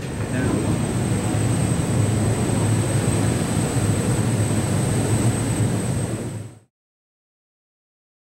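Steady drone of large air-handling units and blowers in a machine room: a low hum with a thin, steady high whine above it, cutting off suddenly near the end.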